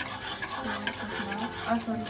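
A steel ladle stirring and scraping a thick bread halwa mixture around a steel kadai.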